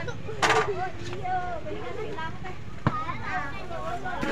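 Outdoor market bustle: people's voices talking over a low steady hum, with a brief loud noisy burst about half a second in and a single sharp click near the three-second mark.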